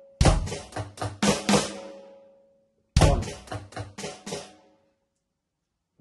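Electronic drum kit playing the paradiddle-diddle (right, left, right, right, left, left) as a beat, with the right stick on the hi-hat, the left on the snare, and a bass drum on beat one. Two short phrases come about 2.7 s apart. Each opens with a loud bass-drum hit and rings away, and a pause of about a second follows near the end.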